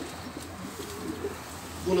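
Domestic pigeons cooing faintly, in short low calls.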